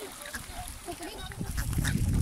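A flock of wintering swans and ducks calling on the water, many short calls overlapping. A low rumble comes in about a second and a half in.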